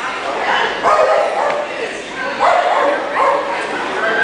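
A dog barking and yipping, a handful of short high calls in two clusters, about one second in and again near three seconds, over voices in a large hall.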